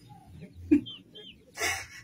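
A chicken clucking a few times, quietly in the background, with a short breathy hiss near the end.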